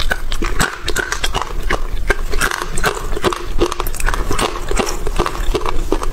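Close-miked chewing of dry-roasted chickpeas: a dense, rapid run of hard crunches as the oil-free, low-temperature-baked beans are bitten and ground, hard-crisp rather than crispy.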